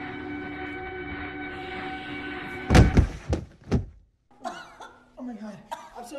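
A held, eerie film-score drone of several steady tones breaks off about three seconds in with a quick run of four heavy thuds as two people collide and go down on the floor. A person's gasping voice follows.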